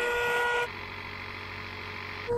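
Electric air pump inflating an inflatable boat hull, running as a steady, high-pitched drone. It switches abruptly to a quieter, lower hum about two-thirds of a second in.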